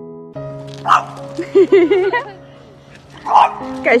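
A dog barks twice in a standoff between dogs, once about a second in and again just after three seconds, over background music.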